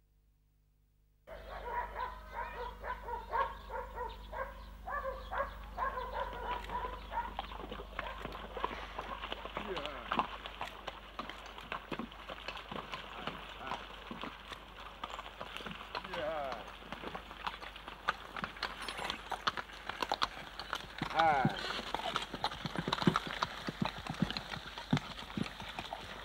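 Hooves of a two-horse hay cart clopping on a rough, muddy dirt road, with many sharp knocks and clatters from the cart, starting about a second in.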